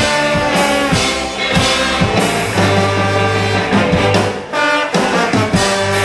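Live ska band playing an instrumental passage: horn section of saxophones and trumpet over electric guitars, bass and a steady drum beat. The bass and drums drop out briefly about four and a half seconds in, then come back.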